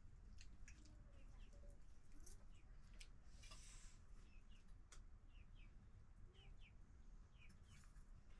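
Faint chirping of small birds, short falling chirps often in pairs, over a quiet room hum. A few faint clicks and a brief hiss a little before the middle.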